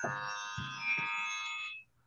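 Synthesized electronic chord of several steady tones, with a higher tone joining about a second in, cutting off suddenly near the end.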